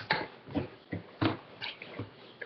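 A boy's short breathy laughs, stifled into about six quick bursts.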